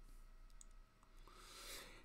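Near silence with a few faint clicks from the buttons of a handheld presentation clicker.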